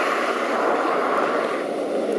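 A car passing close by on the road, its tyre and engine noise swelling and then easing off about a second and a half in.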